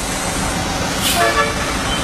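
Steady road traffic noise with a short, flat-pitched horn toot a little past one second in.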